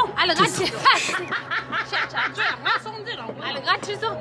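A woman talking, breaking into quick bursts of laughter, over a faint steady low hum.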